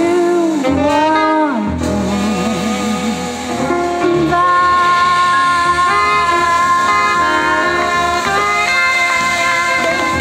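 Live jazz band of piano, saxophone, double bass and drums backing a female singer. She sings wordless wavering phrases, then holds a long high note through the second half.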